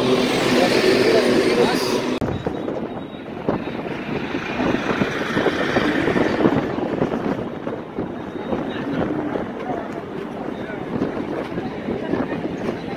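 Indistinct talk of a crowd of people standing around, with outdoor background noise.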